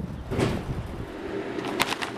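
Shopping cart wheels rolling and rattling over parking-lot asphalt. The sound then drops to a quieter hush, with one short crackle near the end.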